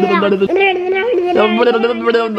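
A woman's playful sing-song babble: a fast run of repeated 'no-no-no' syllables held mostly on one pitch, with a short break and a few quick jumps in pitch about halfway through.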